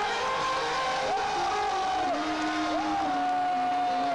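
Electric guitar playing a slow lead of bent, sustained notes over a soft band backing: notes are bent up and held about a second each, and the last, longest one near the end drops away as it is released.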